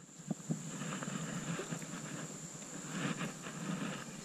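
Wind rumbling on an action-camera microphone by a river, with two light handling knocks about half a second in and a faint steady high whine.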